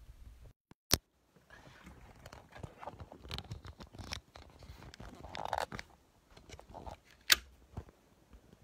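Handling noise from a phone camera being turned on its mount to point down at a desk: scattered clicks, scrapes and rustles. The sound briefly cuts out about half a second in, broken by one sharp click, and there is a louder click near the end.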